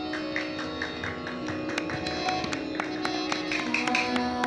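Harmonium holding steady drone notes while the tabla gives scattered light taps and strokes, irregular rather than a set rhythm.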